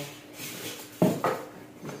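Styrofoam packing insert handled against a cardboard box: a light rustling scrape, then a sharp knock about a second in.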